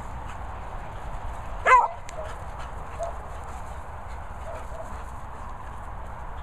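A dog playing gives one sharp, loud bark about a second and a half in, followed by a few faint short yips.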